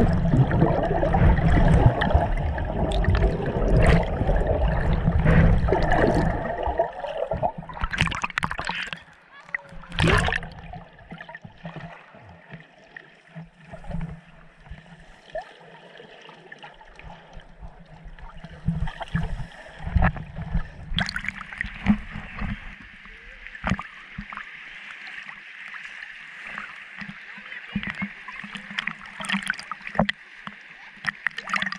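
Water heard through a submerged camera: loud rushing and gurgling for the first several seconds, then quieter underwater noise with scattered clicks and knocks, and a steady hiss in the second half.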